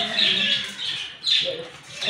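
A young girl squealing with laughter in short high-pitched bursts, one at the start and another just over a second in.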